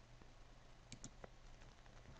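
Near silence with a faint low hum, and a faint computer mouse click, a quick press-and-release pair about a second in.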